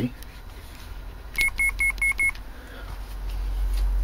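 Five quick, high electronic beeps in under a second, followed by a low hum that grows louder toward the end.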